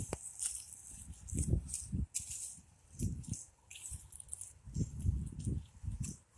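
Footsteps through grass strewn with dry fallen leaves. The leaves crackle and rustle underfoot, and dull low thumps come about every second.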